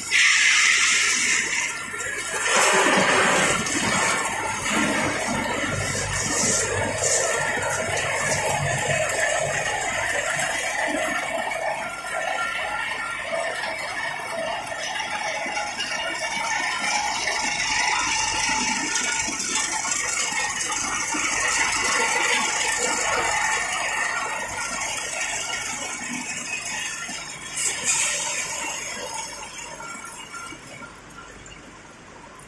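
Continuous peanut frying line running: steady machine noise with rattling and the sound of running liquid.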